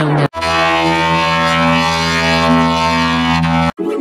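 Effects-processed cartoon audio: a loud held chord of many steady tones that barely changes, beginning after a brief dropout and cut off abruptly shortly before the end.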